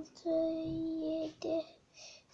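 A child's voice in a drawn-out sing-song: a short note, then one long held note of about a second, then another short note.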